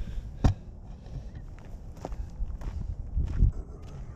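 Footsteps on gravel, a person walking a few paces, with a sharp knock about half a second in.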